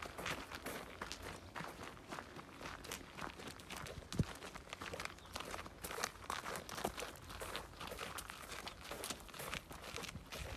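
Footsteps and a horse's hooves crunching on gravel at a walk, irregular and continuous, with one sharper knock about four seconds in.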